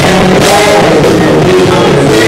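Live rock band playing loud and steady: electric guitars, electric bass and drum kit, with a man singing lead into the microphone.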